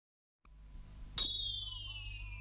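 A high, whistle-like tone that starts suddenly about a second in and glides slowly downward, over a low steady hum.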